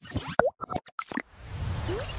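Animated logo intro sound effects: a quick run of plops and pops with a short pitch glide, then a whoosh swelling up over a low rumble from about a second in.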